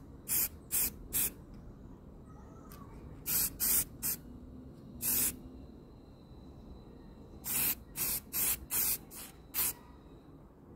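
Aerosol spray paint can spraying in short bursts of hiss, about a dozen in all: a few quick bursts at the start, a slightly longer one about five seconds in, and a rapid run of bursts near the end.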